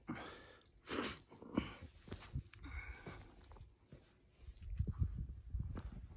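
A walker breathing hard and sniffing close to the microphone, with a sharp breath about a second in. About halfway through, footsteps on stony ground take over.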